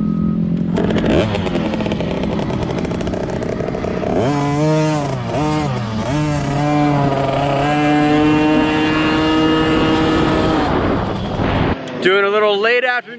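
Husqvarna TC50's 49cc two-stroke single-cylinder engine running steadily at first. About four seconds in the rider opens the throttle and pulls away, and the engine note rises and falls with the throttle before holding a higher steady note. The sound cuts off suddenly near the end.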